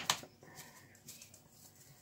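Faint pattering of Adyghe seasoned salt shaken from a small glass jar onto shredded fresh cabbage.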